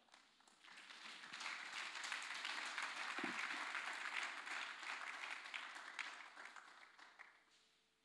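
A congregation applauding: many hands clapping together, building up about half a second in, holding, then dying away near the end.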